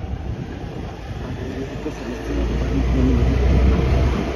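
Motor scooter being ridden: a steady low engine and road rumble that grows louder about halfway through.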